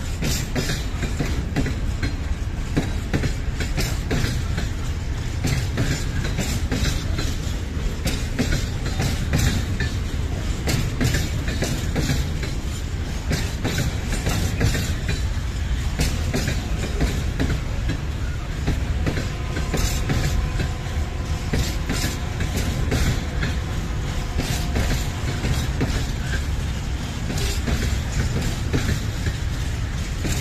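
A long train of PKP Cargo open freight wagons rolling past close by: a steady low rumble with continuous clatter of the wheels over the rail joints.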